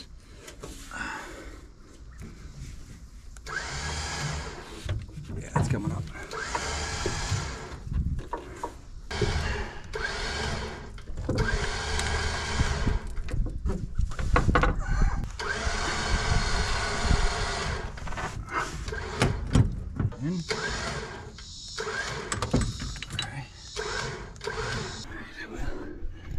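A rope rasping and straining in a series of long pulls, about two seconds each, as an excavator swing motor of about 200 pounds is hoisted out of its housing.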